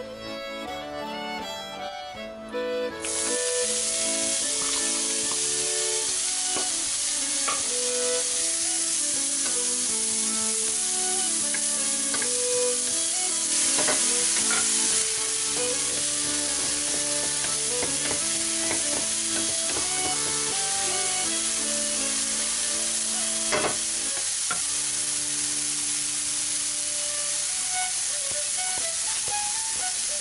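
Diced onion hitting hot bacon fat in a nonstick frying pan and sizzling loudly, the sizzle starting suddenly about three seconds in and running on steadily while a wooden spoon stirs it, with a few sharp knocks. Accordion-led background music plays throughout.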